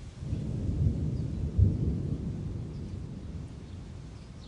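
A roll of thunder: a low rumble swells up about a third of a second in, peaks sharply at about one and a half seconds, then rumbles away over the next two seconds.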